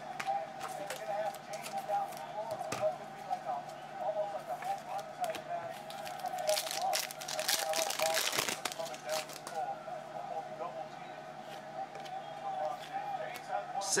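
Plastic card sleeves and rigid top loaders clicking and rustling as a stack of trading cards is handled, with a dense run of rapid clicking in the middle as the stack is riffled through. Under it run a steady hum and faint voices in the background.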